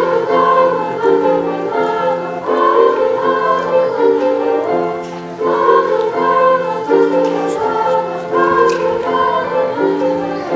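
School choir of mixed voices singing in harmony, with piano accompaniment, in sustained notes that change every half second or so.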